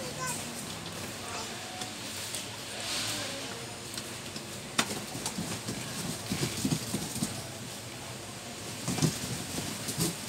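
Gaming chair parts being handled during assembly: one sharp click about five seconds in, then a run of light clicks and rattles, with faint voices in the background.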